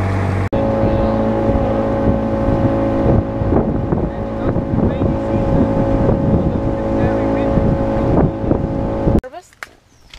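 Motorboat engine running steadily at speed, with a constant drone and water rushing past the wooden hull. The drone cuts off suddenly about nine seconds in, and voices follow.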